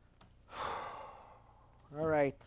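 A man's long sigh: a breathy exhale that starts about half a second in and fades away over about a second. Just before the end a short voiced sound begins.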